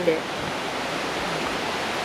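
Steady, even rushing hiss of outdoor background noise in a pause between words.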